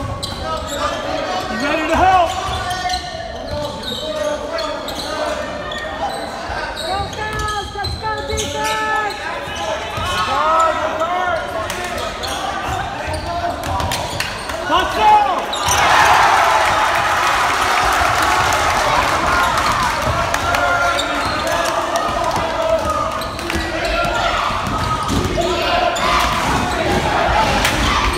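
A basketball dribbling on a gym floor during live play, under the voices and shouts of players and spectators. The crowd noise grows louder about halfway through.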